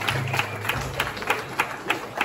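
Audience applause turning into steady clapping, about three claps a second. A low hum stops about three quarters of a second in.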